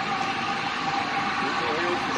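Compressed gas rushing through gas-works piping: a steady, even hiss with a thin steady tone running through it.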